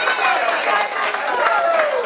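A hand shaker rattled in a steady, fast rhythm of several strokes a second, with voices underneath.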